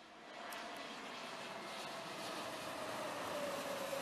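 Twin-engine jet airliner on landing approach passing low overhead, gear down: a rush of engine noise that grows louder, with a steady whine that sinks slightly in pitch as it goes over, loudest near the end.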